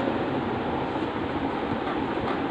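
Steady rushing background noise with a low hum underneath, even and unbroken throughout.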